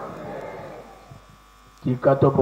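A faint steady electrical buzz in a short pause of an amplified voice, with a fading murmur in the first second; the voice starts again just before the end.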